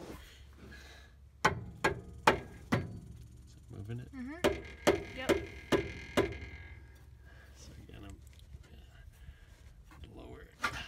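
Hammer blows on the end of a Ford E350's radius arm, knocking at a stuck rubber bushing that has been cut around to loosen it. Four sharp strikes about half a second apart, a short pause, then five more.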